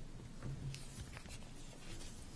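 Sheets of paper being shuffled and leafed through on a table, with faint rustles and small clicks.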